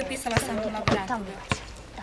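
Background voices of young people talking and laughing, with three sharp thuds about half a second apart.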